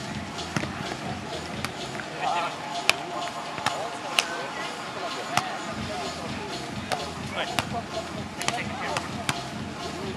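A volleyball being played bare-handed in a beach volleyball rally: a string of sharp smacks, several seconds apart, as players bump, set and hit the ball. Voices of players and onlookers carry on in the background.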